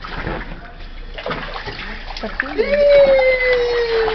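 Water splashing in a small inflatable paddling pool as a toddler and an adult move about in it. Past the middle a voice rises into one long held call that slowly falls in pitch and is the loudest sound.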